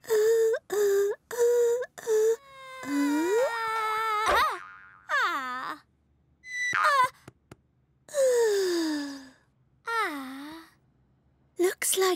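Cartoon voice and sound effects: a character sings four short syllables on one note, then comes a run of pitch-sliding, wavering cartoon effects with a sharp thump about four and a half seconds in. Short falling vocal glides follow later.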